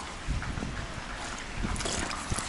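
Wind rumbling on the camera microphone during a walk on wet, puddled pavement, with footsteps on the wet asphalt.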